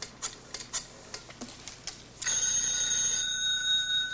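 A series of light clicks, then about halfway through a telephone bell starts ringing loudly and steadily as the call comes through, still ringing at the end.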